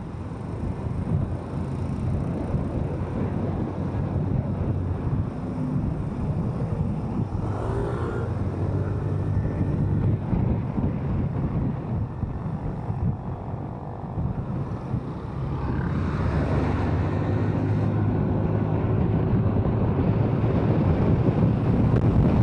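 Kymco SZ150 motorcycle's engine running as it rides in traffic, with wind and road noise on the handlebar-mounted microphone. The engine grows louder over the last third or so as the bike speeds up.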